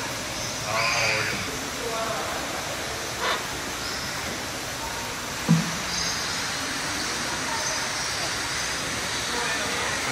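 Faint, indistinct voices over a steady hiss of background noise, with one sharp knock about five and a half seconds in.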